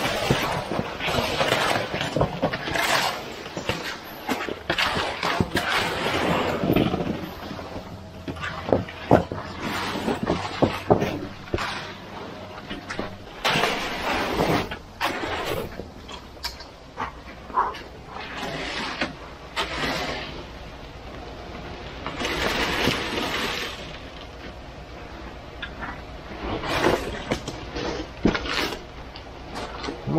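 Wet concrete sliding down a metal chute and being shoved and spread with a shovel and rakes: irregular scraping, with knocks of the tools against the chute and rebar. A faint steady low hum, the conveyor truck's engine, runs under it and stops a little under halfway.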